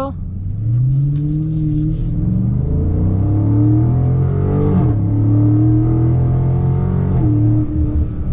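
Dodge Charger Scat Pack's 6.4-litre HEMI V8 under hard acceleration, heard inside the cabin: the engine note climbs steadily, drops at an upshift about five seconds in, climbs again and shifts once more near the end.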